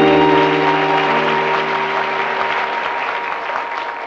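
Audience applause in a theatre over the accompaniment's final chord, which is held and slowly dies away at the end of the song.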